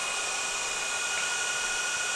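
A steady whooshing whir like a running fan or blower, with two faint steady high-pitched whines over it.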